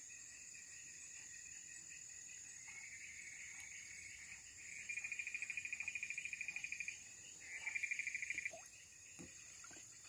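Faint dusk chorus with a steady high-pitched insect drone. About five seconds in, a frog's rapid pulsed trill joins it for about two seconds, and a second, shorter trill follows near the eight-second mark.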